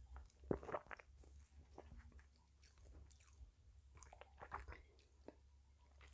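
Near silence with a few faint, short mouth sounds: a man sipping beer from a glass and swallowing, with soft lip and tongue clicks, most of them about half a second in and again around four seconds.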